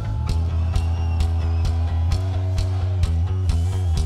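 Live rock band holding a groove: sustained bass and guitar chords over a regular drum beat, about two hits a second.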